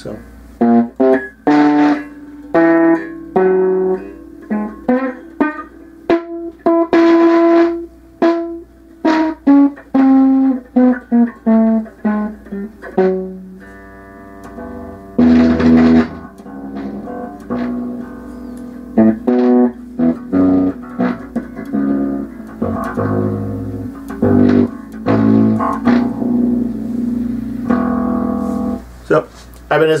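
Ibanez Mikro short-scale bass guitar played fingerstyle: a long stream of plucked bass notes and riffs, with some harder-picked accented notes along the way.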